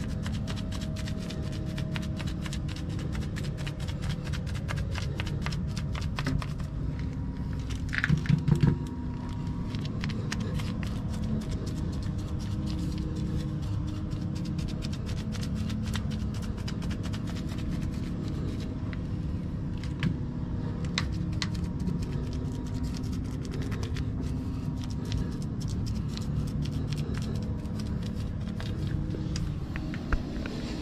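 Paint brush dabbing and scraping thick waterproofing primer onto a concrete wall-and-floor joint, many short scratchy strokes, over a low steady hum and faint background music. A brief louder clatter about eight seconds in.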